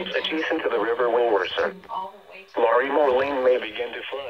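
A weather radio receiver reading out a flood warning through its small speaker, with a short pause about halfway.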